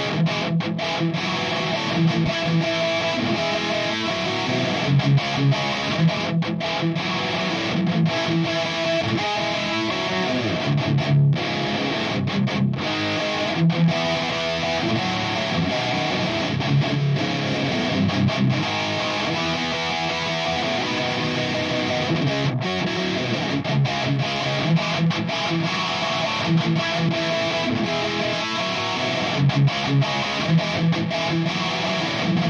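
Distorted electric guitar playing in a full song mix, the guitar run through the Aurora DSP Unified Preamplifier, a clean-boost preamp plugin. The pedal is switched on partway through, meant to make the weak guitar tone tighter and fuller.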